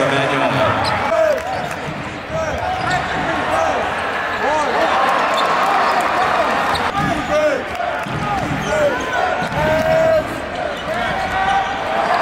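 Live basketball game sound: sneakers squeaking on the hardwood court and a ball bouncing, over steady crowd chatter.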